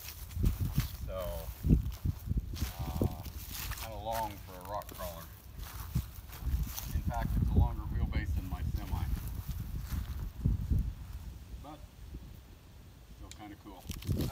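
Faint, brief speech over uneven low rumbling gusts of wind on the microphone.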